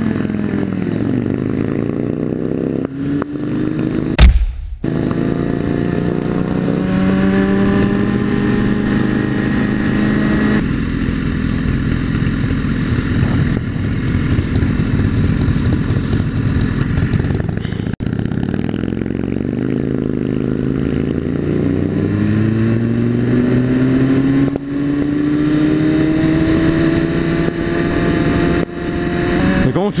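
BMW S1000RR motorcycle engine revving and pulling, its pitch climbing in several long sweeps with a steady rush of noise between them. A single loud thump comes about four seconds in.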